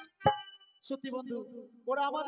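A live stage band's music stops on a single sharp hit with a bright metallic ring that fades over about a second. A man's voice comes in near the end.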